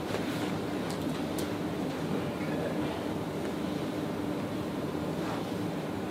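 Steady rushing room noise with a low steady hum, and a couple of faint clicks about a second in; no joint crack is heard.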